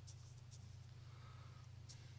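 Near silence: a steady low hum with a couple of faint, brief scratches of a paintbrush on canvas, about half a second in and near the end.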